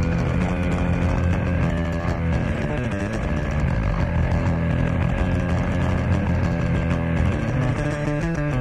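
Electric bass guitar solo, played alone and amplified through a concert PA as one continuous, dense sound heavy in the low end.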